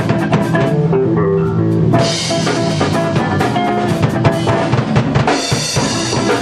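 Rock band playing a funk-blues rock song on drum kit and guitar. The cymbals drop out for about a second, starting about a second in, then come back.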